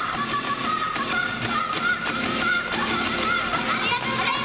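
Upbeat pop music played over stage speakers, with a steady percussive beat under a high melody line.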